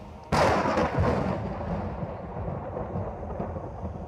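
A thunderclap sound effect in a dance performance's recorded soundtrack: a sudden loud crash about a third of a second in, rumbling away over about three seconds.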